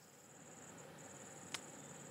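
Faint, steady high-pitched cricket trill with a brief break just before a second in, and a soft click about a second and a half in.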